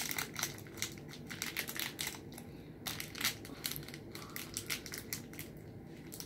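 Crinkling and crackling of a small plastic toy wrapper being handled and opened, an irregular run of small crackles.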